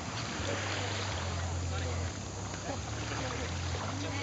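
Wakeboard tow boat's inboard engine idling, a low steady hum.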